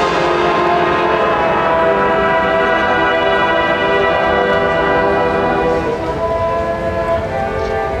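Marching band brass section holding long sustained chords, the harmony shifting a couple of times, with the level easing slightly near the end.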